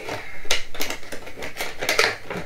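A Funko Pop vinyl figure and its plastic packaging handled by hand: a quick run of light clicks and crinkles as it is put back in the box.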